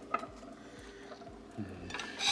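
Quiet kitchen handling sounds: a few faint clicks and taps of food and plates being moved on a countertop, with a brief low murmur near the end.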